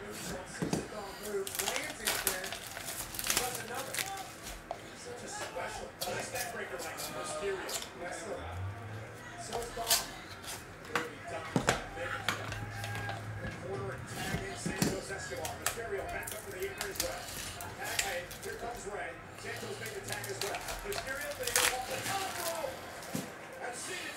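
A cardboard trading-card box and its foil packs being handled and opened, making scattered sharp clicks, taps and rustles.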